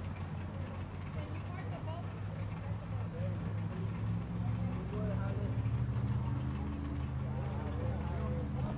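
Outboard motor idling with a steady low hum that swells a little about halfway through, with distant voices over it.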